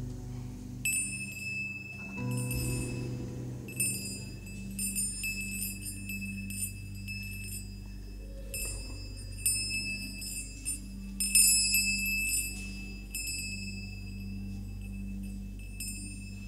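Small hand-held metal chimes rung again and again in clusters of bright, high, ringing tones, over a low steady drone.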